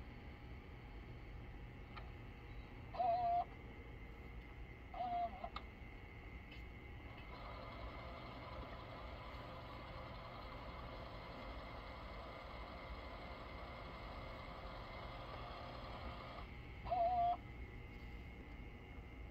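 Faint hiss from a camcorder's small built-in speaker during tape playback with a blank picture. The hiss swells for about nine seconds in the middle. Three brief pitched sounds, each about half a second long, come at about 3 s, 5 s and near the end.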